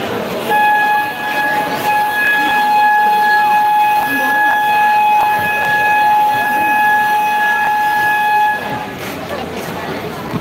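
Game buzzer at a basketball court sounding one long, loud, steady tone for about eight seconds, then cutting off, over crowd chatter.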